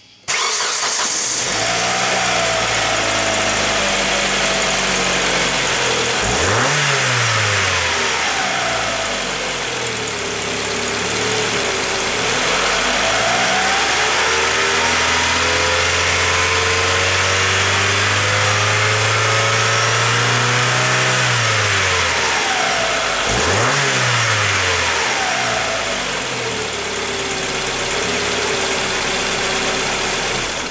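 A 2006 Suzuki Forenza's four-cylinder engine running and being revved, heard close up at the exposed timing belt and cam sprocket. It gives a quick blip about six seconds in, then a slow climb in revs that is held for several seconds before dropping back, and another quick blip a little later before settling back to idle.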